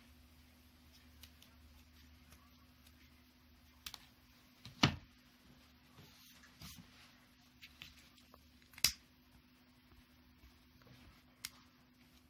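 A few sharp clicks and taps from craft tools and ribbon being handled on a work table, over a faint steady hum. The two loudest clicks come about five seconds and about nine seconds in.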